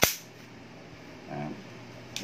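A single sharp metallic click from an airsoft M4 rifle's receiver as it is worked to open the hop-up access at the ejection port.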